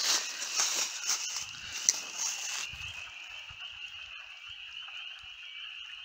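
Steady, high-pitched chorus of spring peepers calling together. Over the first half, dry grass and brush crackle as someone moves through them.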